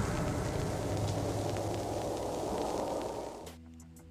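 Horror trailer sound design under a glitching title card: a static-like hiss over a deep rumble that slowly fades, then drops away about three and a half seconds in, leaving a faint low hum.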